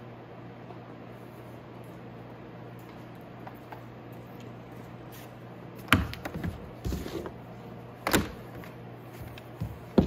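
Steady low hum, then from about six seconds in a few sharp knocks and clatters as an old metal battery charger is fetched and handled, the loudest two about two seconds apart.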